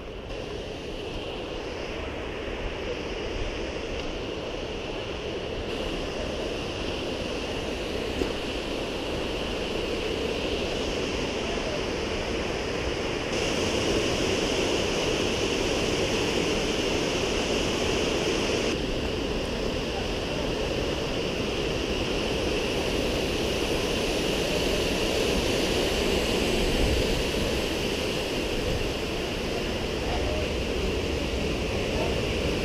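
Waterfall rushing, a steady roar of falling water that grows gradually louder as it draws nearer.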